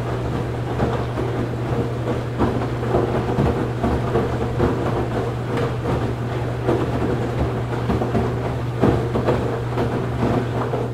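Washing machine running: a steady low hum with irregular knocks and thuds from the turning drum and its load.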